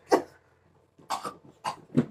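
A few short yelp-like vocal sounds, spread out with pauses between them.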